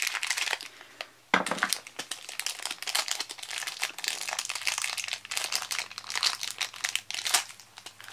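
Thin yellow plastic wrapper crinkling and rustling as it is handled and unwrapped by hand, with a brief pause about a second in.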